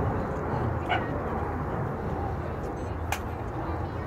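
Steady low rumble of outdoor background noise, with two brief sharp sounds about a second in and about three seconds in.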